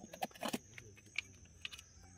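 Fingers picking and scraping debris out of the tapping hole in a felled palm trunk, a run of small irregular clicks and crackles. The tapper is clearing out remains that were blocking the hole so the sap can run again.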